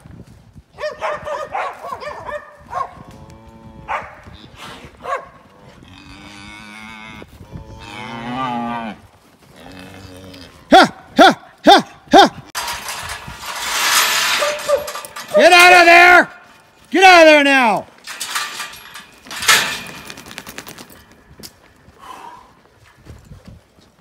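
Range cattle mooing and bawling: a run of short sharp calls about halfway through, then two long calls that fall in pitch, with a loud rough noisy stretch between them.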